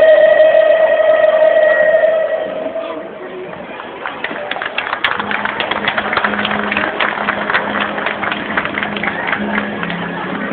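Choir singing ends on a long held note. After a brief lull, a crowd applauds with dense, irregular clapping.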